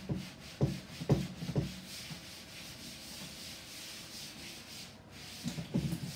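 A cloth wiped back and forth across a tabletop, a steady rubbing, with a few short thumps in the first two seconds.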